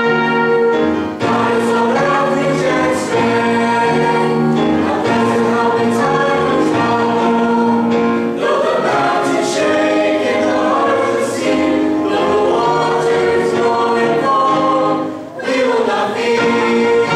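Mixed high school choir singing a sacred choral anthem in held, changing chords.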